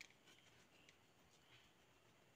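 Near silence: faint room tone with a few very faint soft ticks.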